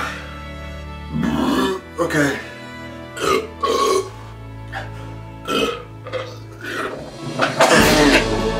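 A man belching and retching in a run of short heaves, the loudest near the end as liquid comes up: a stomach overfull of carbonated Sprite and bananas. Background music plays underneath.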